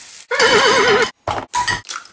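A horse whinny, used as a sound effect: one loud call lasting just under a second, its pitch wobbling quickly and evenly, followed by a couple of short, rough bursts.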